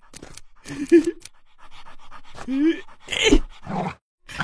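Cartoon dog voicing in short bursts, panting and snarling, mixed with a man's short pained cries.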